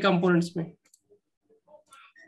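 A man's voice speaking a few words in Hindi, then faint scattered clicks in the quiet that follows.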